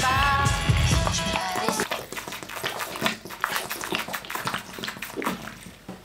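Background music for about the first second and a half, then the quieter gulps and clicks of someone drinking from a plastic bottle.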